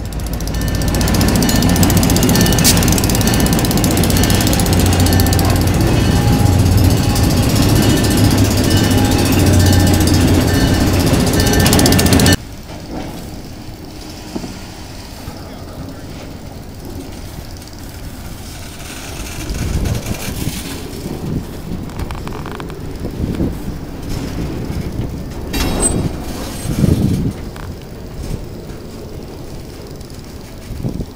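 EMD SW8 switcher locomotive's eight-cylinder two-stroke diesel running loud and steady as it passes close by. About twelve seconds in the sound drops abruptly to freight cars rolling past more quietly, with a few clanks from the wheels and couplers.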